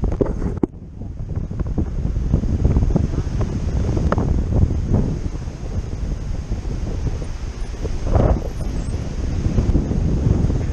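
Wind buffeting the action camera's microphone in paraglider flight: a steady low rumble that dips briefly about a second in.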